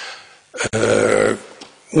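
A man's breath in, then a single held hesitation sound, an "ehm", about a second in, spoken into a desk microphone during a pause in his talk.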